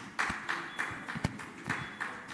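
Scattered, light applause from a small audience in a hall: a handful of irregular claps over a soft hiss of room noise.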